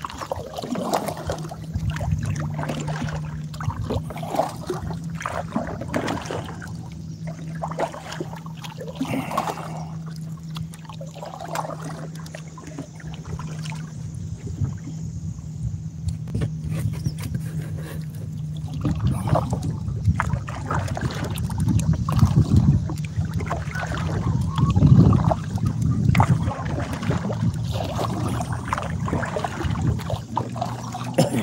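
Small waves lapping and knocking against the hull of a plastic sit-on kayak, with wind gusting on the microphone, heaviest in the last third. A steady low hum runs through the first two-thirds.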